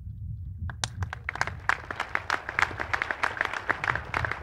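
Audience applauding: a few claps a little under a second in, quickly filling out into steady applause.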